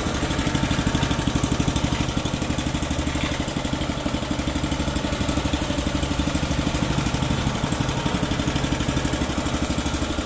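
Robin EY15-3 3.5 hp four-stroke petrol engine on a tamping rammer idling, with a steady, even pulsing beat.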